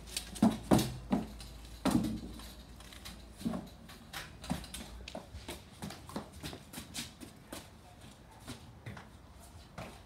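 A child's running footsteps in slide sandals on foam mats and concrete. There are a few louder landing thumps in the first two seconds, then lighter, uneven steps at about two a second.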